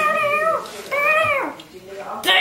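A child's high voice singing two drawn-out notes, the second bending down in pitch at its end.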